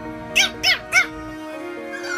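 Pomeranian puppy giving three short, high yaps in quick succession, about a third of a second apart, over background music.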